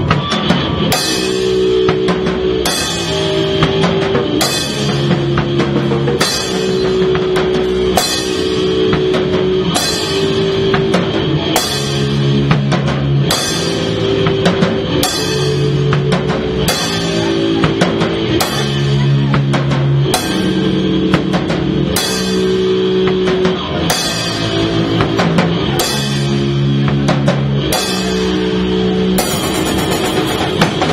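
A live punk band playing an instrumental passage: drum kit with regular cymbal crashes over a repeating guitar and bass riff.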